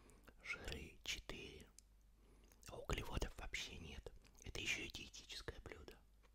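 A man whispering close to the microphone, reading out a food package label in three short phrases with pauses between them.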